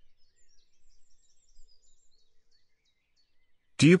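Faint, high bird chirps, several in quick succession, over a low outdoor background.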